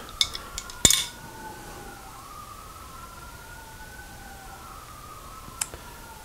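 A sharp metallic knock about a second in, with a few lighter clicks, as a wrench breaks loose the lathe's tool post and the compound rest is swung round. Behind it, a faint high tone that slowly rises and falls, in two strands that cross.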